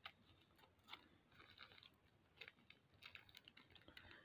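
Near silence, broken by faint scattered clicks and crinkles of a small plastic packet being handled.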